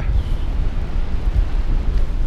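Strong gusting wind buffeting the camera's microphone: a loud, uneven low rumble with a hiss over it.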